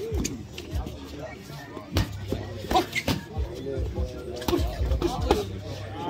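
Irregular thuds of boxing gloves landing during a sparring exchange, about a dozen sharp strikes at uneven intervals, over low crowd murmur.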